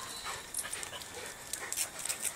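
A beagle, a Rhodesian ridgeback and a Weimaraner play-fighting: quiet panting and scuffling, with a few faint short sounds near the end.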